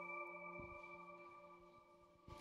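Electronic intro-jingle chime tones ringing out, several steady pitches held together and slowly fading away to near silence.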